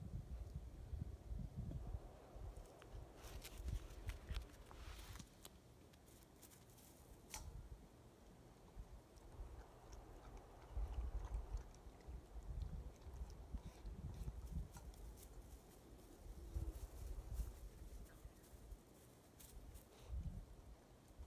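Faint sounds of a German Shepherd puppy moving about and nosing at its toys: scattered light clicks and rustles over irregular low rumbling bursts.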